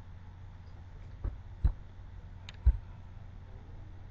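Four small knocks and clicks over a low steady hum, from a hand turning the metal barrel of a Bunsen burner to fine-tune its flame. They come in the second and third seconds, the last one the sharpest.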